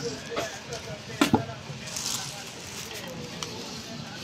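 Small yellow paper envelope crinkling and rustling as it is handled, with a few sharper crackles about a second in.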